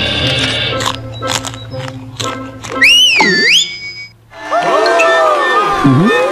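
Cartoon soundtrack of music and comic sound effects: a run of sharp taps, a loud wavering whistle going up and down about three seconds in, then a cartoon character's wordless laughing voice near the end.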